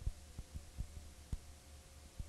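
Low steady hum with a faint wavering higher tone, broken by irregular soft thumps and clicks every few tenths of a second.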